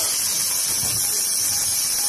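Steady, loud high-pitched hiss.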